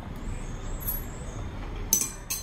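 A steady low rumble of background noise, like distant traffic, with a sharp click near the end.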